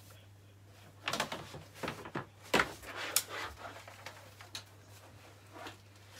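Belongings being rummaged through and handled: a string of knocks, clatters and rustles, loudest about two and a half seconds in, then lighter handling, over a faint steady hum.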